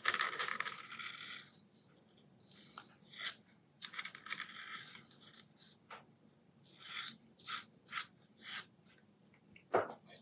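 Metal dip-pen nib scratching across paper as ink lines are drawn. A long scratchy stroke at the start and another about four seconds in are followed by a run of short, separate strokes near the end.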